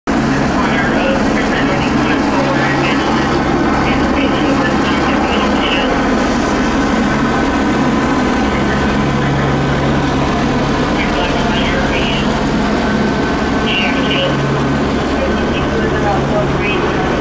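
Distant shouted voices over a steady low rumble of idling vehicles and traffic.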